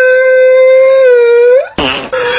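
A singing voice holds one long note on the word "through" and slides up in pitch at its end. A cartoon fart sound effect cuts in near the end.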